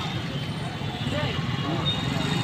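Small motorcycle engine idling steadily close by, with people's voices chattering around it.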